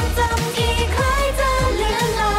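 Thai pop song playing: a woman's sung melody over sustained bass and a regular kick-drum beat.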